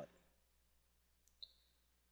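Near silence, broken once about a second and a half in by a single short click of a computer mouse button.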